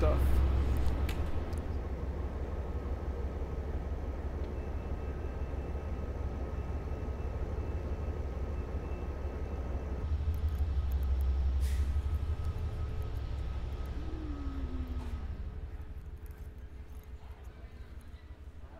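Stationary Amtrak passenger train idling at the platform: a steady low rumble with a faint mechanical hum, louder for a couple of seconds about ten seconds in, then fading away near the end.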